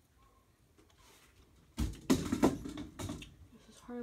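Quiet at first, then from about two seconds in a loud spell of rustling and knocking: objects being handled close to the microphone.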